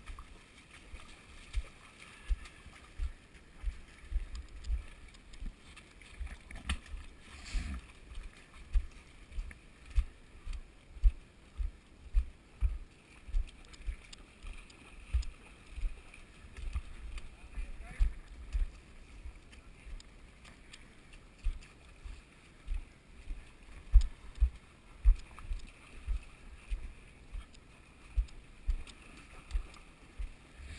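Footsteps of a person wading through a shallow muddy creek: a steady run of dull low thumps, about two a second.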